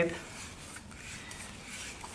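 Faint rubbing and scraping of a plastic probe sleeve being worked off a water-quality probe by hand.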